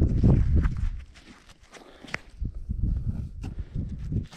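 Knit work gloves rubbing and scraping dirt off a freshly dug shell casing: rustling and handling noise, loudest in the first second, then quieter scattered small clicks and scuffs.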